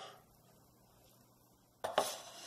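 A cleaver chopping raw shrimp on a bamboo cutting board: two sharp knocks in quick succession near the end, after a short scrape fades out at the start and a stretch of faint room tone.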